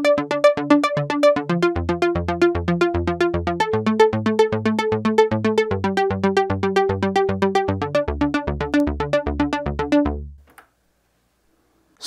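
Roland Juno-60 analog polysynth arpeggiator running up across three octaves: a fast, even stream of notes over held chords, the chord changing about every two seconds. It cuts off about ten seconds in.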